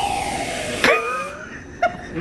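Aerosol whipped-cream can hissing as cream is sprayed straight into a mouth, for just under a second, then a click and a short voice sound.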